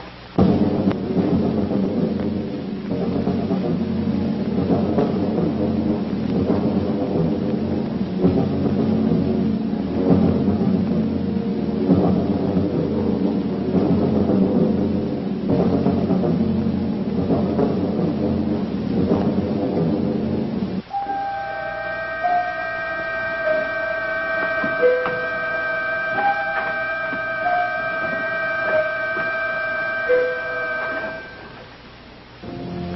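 Soundtrack of a rumbling, thunder-like roll under dramatic music, which cuts off about two-thirds of the way in to sustained organ-like chords with a slow, stepping melody.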